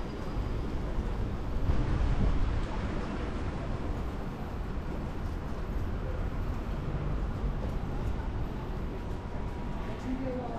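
Outdoor city street ambience: a steady low rumble with a louder swell about two seconds in.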